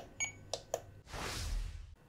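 Three light clicks of buttons being pressed on a RadioMaster Pocket radio transmitter, the first with a faint high beep. A soft rushing noise follows for about a second near the end.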